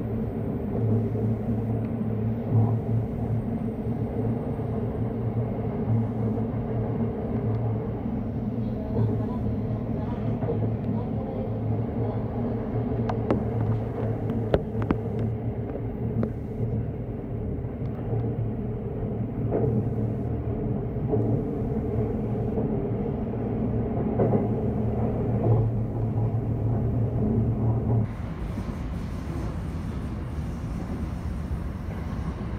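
Electric commuter train running along the track, heard from inside the front car: a steady rumble with a constant low hum and a few sharp clicks in the middle. Near the end the hum stops and the sound becomes quieter.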